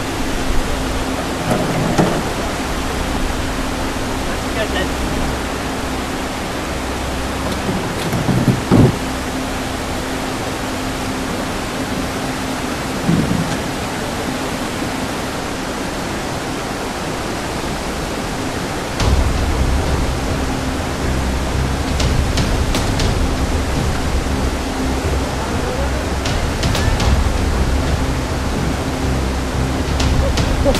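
Rushing white water of a river weir and rapids: a steady roar of water, with a deeper rumble joining about two-thirds of the way through.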